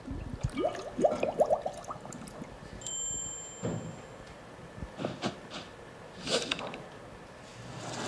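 Chime sound effects from a course video's animated title intro, played back from a laptop: a quick run of rising bell-like notes in the first two seconds, then scattered chime strikes and a swell near the end.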